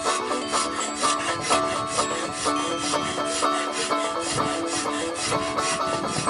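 A hand carving knife shaving and scraping wood on a walking stick being carved, mixed with banjo music that plays throughout with quick, steady plucked notes.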